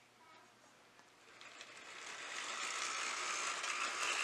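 Model steam locomotive's electric motor and wheels running on the track as the train starts off, rising from near quiet about a second in and growing steadily louder as it gathers speed with its coaches.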